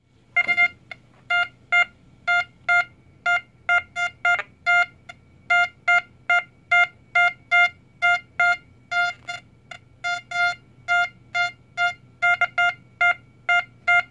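XP Deus metal detector remote control box sounding its target tone: a loud run of short, single-pitched beeps, about two or three a second. This is the properly working unit at its normal volume, the comparison for a second control box whose volume has dropped badly.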